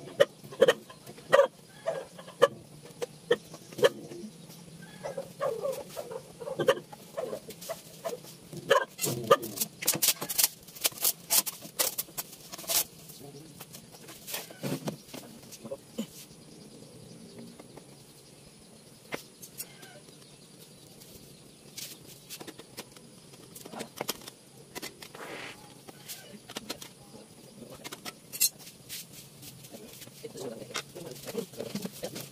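Irregular sharp knocks and taps, thickest in a quick cluster about ten to thirteen seconds in, mixed with short clucking calls in the first few seconds.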